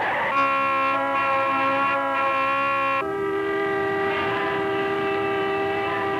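Vehicle horns blaring in a long, steady blast: one pitch for about three seconds, then a higher-pitched horn held through the rest.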